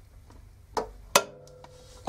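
Two sharp metallic clicks from a socket wrench turning the central rotor bolt of an LG direct-drive washer motor. The second click, about a second in, is louder and rings briefly, as the bolt comes loose.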